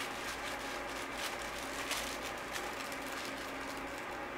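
Steady background room hum with scattered light clicks and taps from puppies moving about and playing with toys on a towel over a hard floor; the sharpest tap falls just before the middle.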